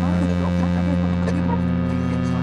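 A loud, steady low droning hum with many short chirping glides over it, laid on as background sound under a title card.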